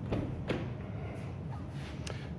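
Porsche Panamera front door being unlatched and swung open: two faint clicks, one at the start and one about half a second in, over a low steady hum.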